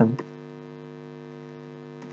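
Steady electrical hum made of several steady low tones, running at an even level under the recording, with the end of a spoken word in the first moment.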